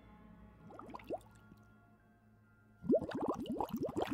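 Bubbles gurgling in water: a few short rising blips about a second in, then a quick stream of rising bubble blips from near the three-second mark, over faint background music.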